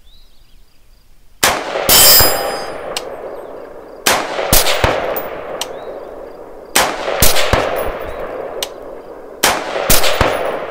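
Bear Creek Arsenal AR-15 rifle fired from the bench in quick pairs: eight shots, two about half a second apart, each pair a few seconds after the last. Each shot is loud and sharp and trails off in a long echo.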